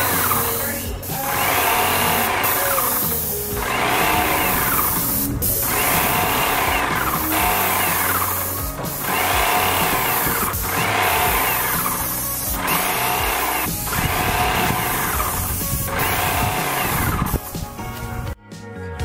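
Electric airless paint sprayer's pump motor running in cycles while paint is sprayed: a whine that rises and falls about once every two seconds. Background music plays underneath.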